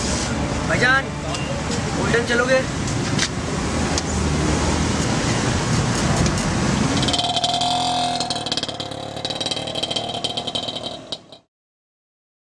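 Men's voices, short and raised, over the steady running of an auto-rickshaw engine and street noise. The engine sound changes about seven seconds in, and all sound cuts off suddenly near the end.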